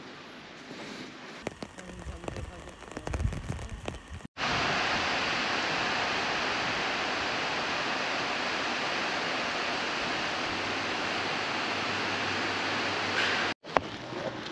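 Faint footsteps and handling clicks, then an abrupt switch about four seconds in to a loud, steady hiss of heavy rain on a hangar roof. The hiss cuts off suddenly near the end.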